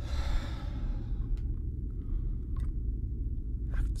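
A man's long, breathy sigh in the first second, over a steady low rumble, with a few faint clicks as he twiddles a wire.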